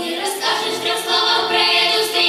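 Children's choir singing together, the massed voices coming in right at the start after a piano introduction.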